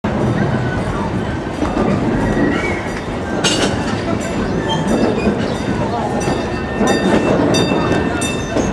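Passenger coach of the Cedar Point & Lake Erie narrow-gauge railroad rolling along, heard from aboard: a steady rumble of wheels on track with occasional sharp clicks from the rails, and riders' voices mixed in.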